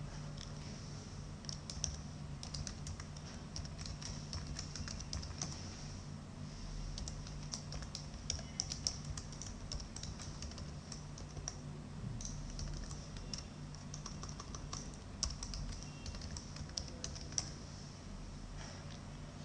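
Computer keyboard typing in quick bursts of keystrokes as a username and password are entered, over a steady low hum.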